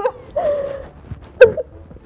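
A woman's excited, high-pitched squeal tailing off, then short giggling vocal sounds. The loudest is a sharp yelp about a second and a half in.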